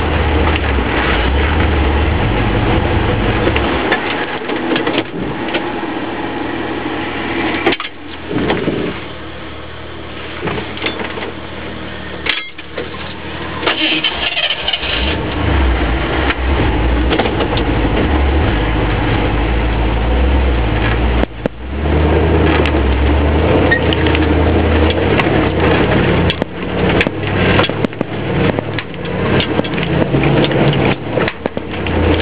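Jeep Wagoneer's engine running under load as it crawls over rock, easing off for a stretch in the middle with a few sharp knocks, then revving harder again in uneven surges.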